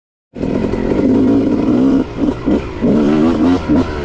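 Honda CR250 two-stroke single-cylinder dirt bike engine pulling under throttle, its pitch rising and falling as the throttle is rolled on and off, with short dips about two seconds in and again near the end. The sound starts abruptly just after the beginning.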